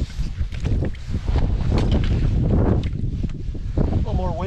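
Wind buffeting the microphone, a loud low rumble throughout, with a few short rustles mixed in.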